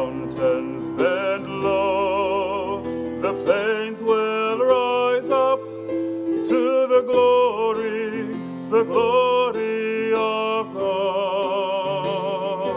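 A carol sung by a single voice with strong vibrato, phrase after phrase, over sustained instrumental accompaniment.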